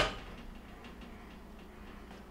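A sharp click right at the start, then faint small ticks as the wire connectors on a gas range's electronic control board are handled and checked.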